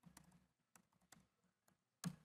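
Faint typing on a computer keyboard: about eight light, separate key clicks.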